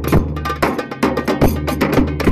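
Large double-headed tabl drum beaten with a stick together with hand-played frame drums, keeping a fast, steady beat of several sharp strokes a second, with heavier accented strokes among them.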